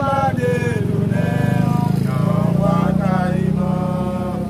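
An engine running steadily close by, loudest in the middle, under a man's raised voice.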